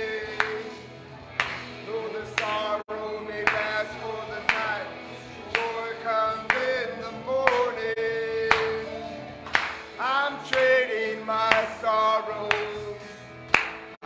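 Upbeat worship song: voices singing a melody over band accompaniment, with a sharp beat about once a second.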